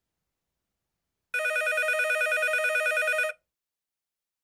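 Telephone ringing: one trilling, warbling ring of about two seconds, starting about a second in.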